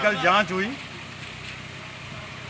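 Tractor engine running steadily at a low hum behind a short burst of speech at the start. The tractor carries a mounted sanitizer sprayer.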